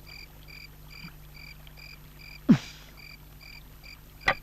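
Crickets chirping steadily in a regular rhythm, about two to three chirps a second, over a faint low hum. About two and a half seconds in, a man gives one short voiced 'aah', falling in pitch, the loudest sound.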